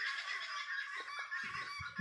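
Chukar partridges and other farm birds calling, a continuous chatter of repeated calls.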